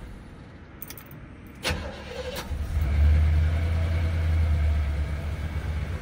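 Key turned and the starter cranks briefly on a 1979 Chevrolet Impala. The engine catches about three seconds in and settles into a steady low idle, heard from inside the cabin and fairly quiet through its new exhaust.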